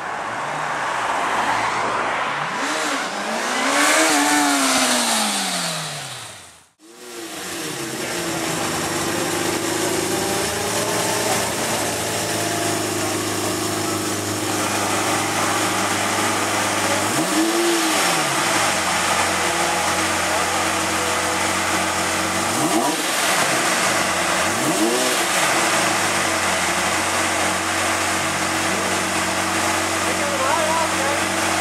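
A Suzuki GSX650F sport motorcycle's inline-four passes by under power, its note rising and then falling as it goes. The sound then cuts to a Lamborghini Murciélago SV's V12 idling steadily, with one short throttle blip about halfway through and two more close together later on.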